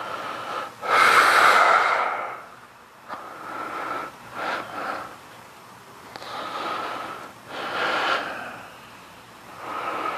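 A man's heavy breathing under exertion while holding a glute bridge: a series of forceful breaths one to two seconds apart, the loudest about a second in.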